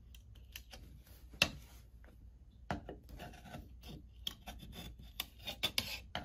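Flathead screwdriver scraping and clicking as it pries an old Honeywell T87 thermostat's plastic wall plate off a painted wall, the plate held on by paint that is starting to come away. Scattered short scrapes and clicks, the sharpest about a second and a half in, coming more often near the end.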